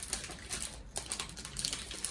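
Soft, scattered clicks and light rustles of hands handling a post-operative wound drain tube and its dressing at the knee.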